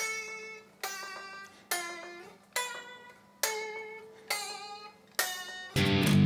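Cheap Harley Benton Stratocaster-copy electric guitar with three single-coil pickups, heard through an amplifier as its first check after plugging in: seven chords struck one at a time, a little under a second apart, each left to ring and fade. A faint steady hum sits underneath.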